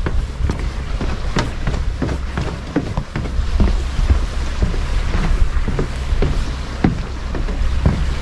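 Wind rumbling on the microphone, with footsteps on wooden boardwalk planks heard as light irregular knocks.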